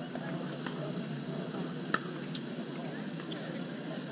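Outdoor background murmur of distant voices, with one sharp pop about two seconds in, like a pickleball paddle striking the ball on a nearby court, and a few fainter pops.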